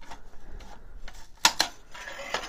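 A scraper prying a brown PLA 3D print off a printer's build plate without reheating: scattered small clicks, then two sharp cracks close together about a second and a half in as the print pops loose.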